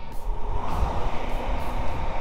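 Steady wind rush on the microphone over the low, even running of a TVS Sport 100's small single-cylinder engine at cruising speed on the road.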